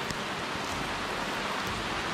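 Steady rain falling on wet paving stones.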